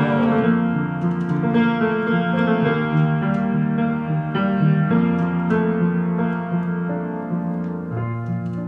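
Upright piano playing a slow instrumental interlude: sustained chords with new notes struck about every second.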